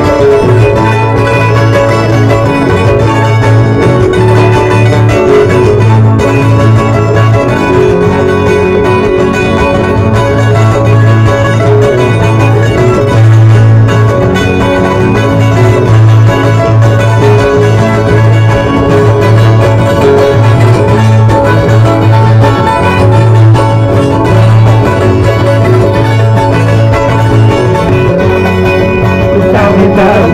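Andean Qorilazo string-band music, with guitars and mandolin-type instruments strumming and plucking together, loud and without a break.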